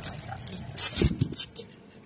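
Handling noise of a hand-held phone microphone: a short hiss just before a second in, then a few low bumps.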